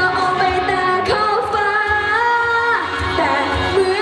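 A young solo singer singing a song into a handheld microphone over backing music, amplified through the stage PA, holding one long note about halfway through.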